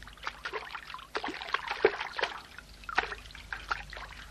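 Water splashing in quick, irregular splashes: a sound effect of a duck paddling and swimming.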